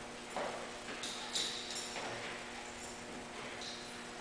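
Faint footsteps with a few soft knocks, irregular and short.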